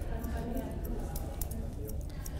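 Grooming shears snipping through a bichon frisé's coat: a run of light, irregular clicks of the blades, several a second, over a low steady hum.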